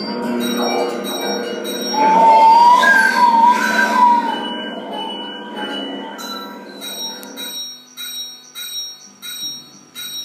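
Free-improvised experimental music of ringing, bell-like metallic strikes, with a louder wavering tone a couple of seconds in. In the last seconds the bell strikes come evenly, about two a second.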